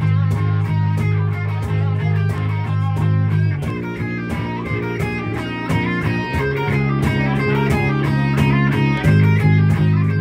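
A live band playing an instrumental passage with no singing: electric guitar over bass guitar and keyboard, with a cajon keeping a steady beat. The held low notes change about a third of the way in and again near the end.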